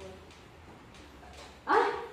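A dog barks once, sharply, near the end.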